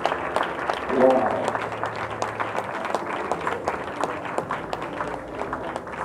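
Audience applauding: a dense run of handclaps that slowly thins out and quietens, with a voice calling out over it about a second in.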